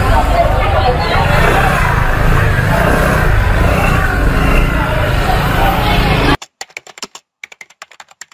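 Busy street ambience: crowd chatter over a steady low rumble, cutting off suddenly a little after six seconds in. A quick, irregular run of keyboard typing clicks follows, a typing sound effect.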